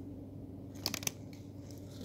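Booster-pack foil and trading cards being handled, with two or three sharp clicks about a second in, over a steady low hum.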